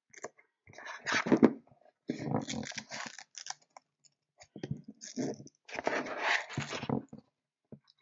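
Hook-and-loop strap being fed through the slots of a battery holder plate and pulled around a battery: irregular rustling, scraping and clicking in several short bursts with brief pauses between.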